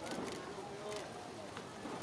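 Voices of people calling out around the camera position, with two or three sharp camera-shutter clicks, one near the start and one about a second in.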